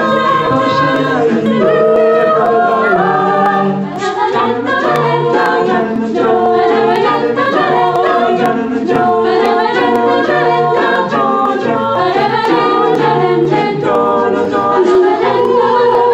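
A cappella vocal group singing a Yemenite medley in harmony: a male lead voice over mixed voices, with a low bass part moving in a steady rhythm underneath.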